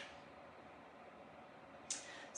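Near silence: room tone, with a faint short click at the start and a brief soft hiss near the end.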